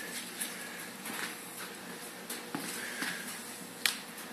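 Quiet footsteps and scuffs on a concrete garage floor, with a single sharp click just before the end.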